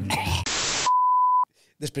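An editing sound effect: a short burst of loud static hiss followed by a steady high-pitched beep of about half a second that cuts off abruptly. It marks the cut out of an inserted TV clip.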